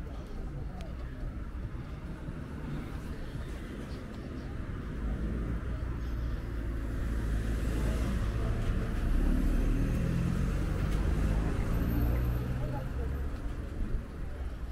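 A car passing along the street, its engine and tyre noise growing louder over several seconds and then fading near the end. Passers-by talk faintly alongside.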